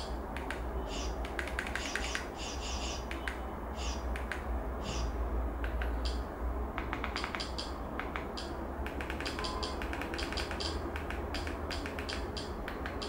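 Runs of short, sharp clicks, several a second and coming in bursts, as the Kodi on-screen menus are scrolled through, over a low steady hum.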